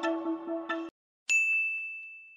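Background music cuts off abruptly about a second in. After a brief silence, a single bright bell ding rings out and fades slowly.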